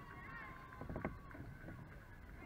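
Faint distant voices of players and spectators over low outdoor rumble, with one sharp knock about a second in.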